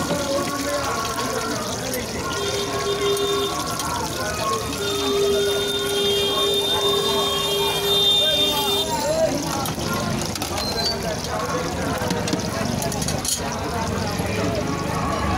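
Busy street-stall ambience: voices talking in the background over the sizzle of kebabs frying in oil on a flat steel griddle. A steady high tone sounds twice in the middle, briefly and then for about four seconds. A single metal clack comes near the end.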